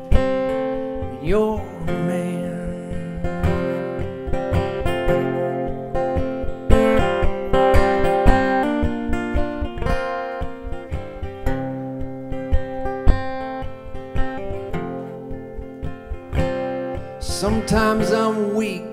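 Steel-string acoustic guitar played solo in an instrumental passage, a steady run of plucked and strummed notes.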